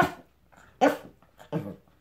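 A toy poodle giving three short, sharp barks, less than a second apart, while eager for its breakfast.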